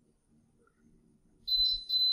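Electric pressure cooker beeping twice near the end, a steady high-pitched electronic tone. The beeps mark the cooker hitting the 125 °F target of a recipe that has been tampered with, a clear sign that the recipe was modified.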